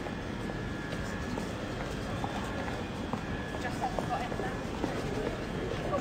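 Railway station ambience under a large train-shed roof: a steady background noise with a faint steady tone, and faint distant voices in the middle.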